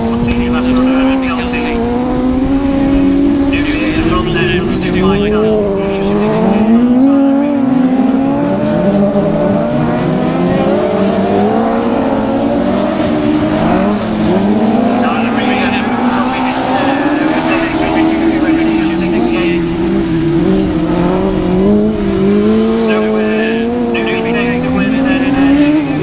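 Several autograss racing buggies' engines running hard together, their pitch rising and falling as they accelerate and lift off around the dirt track.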